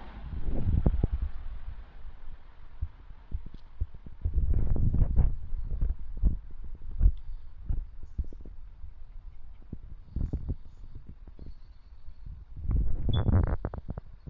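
Low rumbling and soft knocks on the phone's microphone, with louder stretches about a second in, about five seconds in and near the end.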